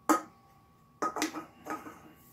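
An empty aluminium beer can set down on the wooden counter with a sharp knock about a second in, followed by a few short sniffs at a freshly poured glass of German-style pilsner.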